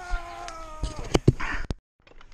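Mountain bike disc brakes squealing in a steady, slightly falling tone that ends about a second in, followed by a few sharp knocks and rattles of the bike over rough trail. The sound cuts out abruptly near the end.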